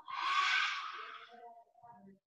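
A forceful breathy exhale through a wide-open mouth, a yoga lion's breath with the tongue out, starting strongly and fading out over about a second.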